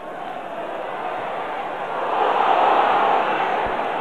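Football stadium crowd noise, a dense wash of many voices that swells louder from about halfway through as an attack builds toward goal.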